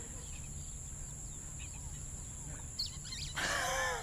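Quiet theatre room tone with a few faint short squeaks, then, about three seconds in, a woman's shriek that falls in pitch.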